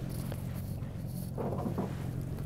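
Small boat's motor idling in neutral, a steady low hum. A brief vocal sound comes about one and a half seconds in.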